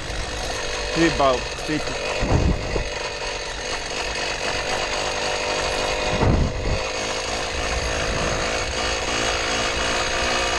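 Small two-stroke motorized-bicycle engine running steadily while riding, with a buzzing, chainsaw-like note. Two low thuds come about two and a half seconds and six seconds in.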